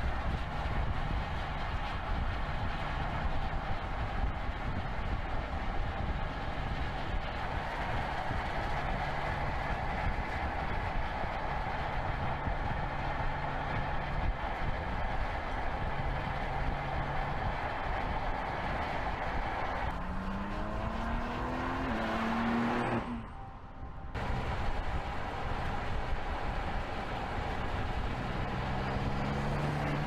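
A 2022 BMW X4 M's twin-turbo inline-six running as the SUV drives along, over steady road and tyre noise. About two-thirds through, the engine note climbs in steps as it accelerates, then the sound briefly drops out. It rises again near the end.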